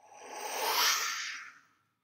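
A breathy, unvoiced "whoosh" made with the mouth for the fire's smoke, swelling and fading over about a second and a half.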